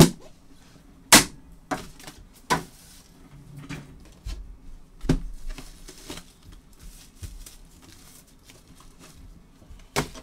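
Knocks and clacks of cardboard trading-card boxes being handled and set down on a tabletop: sharp knocks at the start and about a second in, a few more within the next two seconds and one about five seconds in, with quieter rustling handling between.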